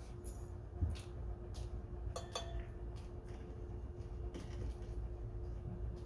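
A few light taps and clicks of a plastic additive bottle, its cap and glass beakers being handled on a table, one with a short glassy ring about two seconds in, over a steady low hum.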